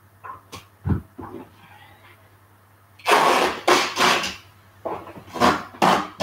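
Tape being pulled off a roll in long rips, loudest a few seconds in, then several shorter rips as strips are torn and stuck across a plastic tray, after a few soft knocks at the start.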